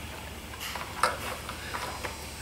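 A few small clicks and ticks as a fuel hose is handled and worked onto a carburetor's barb, the sharpest about halfway, over a low steady hum.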